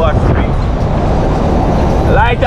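A car driving along a road, heard from the car itself: a loud, steady, low rumble of engine, tyre and wind noise.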